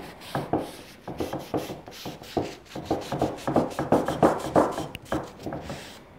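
A paper towel wiping wood stain onto a torch-burned pine beam, rubbing along the grain in quick back-and-forth strokes, loudest a little past the middle.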